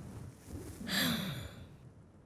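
A young voice sighing once: a long breathy exhale that falls in pitch.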